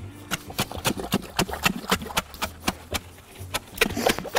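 Fast-setting fence-post cement mix soaked with water, fizzing and popping in the hole with irregular sharp pops several times a second: gas released as the mix reacts with the water.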